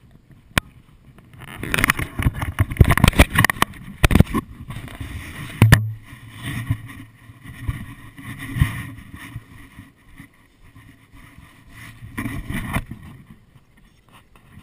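Water splashing and sloshing around a stand-up paddleboard as it is paddled, loudest and busiest in the first few seconds, then easing to quieter swishes at intervals. Two sharp knocks stand out, one about half a second in and one near the six-second mark.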